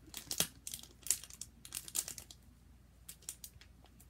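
Crinkling and tearing of packaging as a children's activity play pack is opened by hand: irregular sharp crackles, busiest in the first couple of seconds and then sparser.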